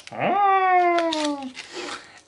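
A cat meowing once: a single long meow that rises quickly and then slides slowly down in pitch, with a short click about a second in.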